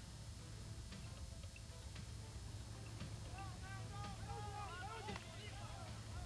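Faint background of a TV race broadcast: a steady low rumble, with a faint voice talking in the middle.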